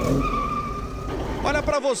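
Sound effect of a vehicle with a tyre screech: a high whine over a low rumble that starts suddenly and cuts off near the end, as a man's voice begins.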